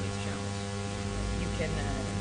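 A steady low hum heard inside a car's cabin, with a deeper rumble swelling about a second in. A voice begins right at the end.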